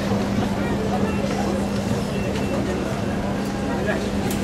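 Busy pedestrian street ambience: indistinct chatter of passers-by over a steady low hum.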